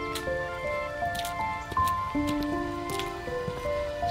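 Background music: a slow melody of held notes stepping from one pitch to the next, with a few brief clicks over it.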